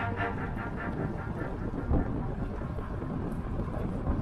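Steady rushing road and tyre noise of a car driving, with the last ring of music fading out at the start.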